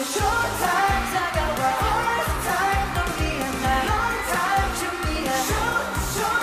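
K-pop song with singing over a steady, driving beat.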